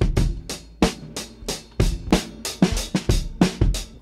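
A drum groove playing back on its own, as the first layer of a mix: steady, evenly spaced hits with deep kick-drum thumps among crisper snare and cymbal strokes.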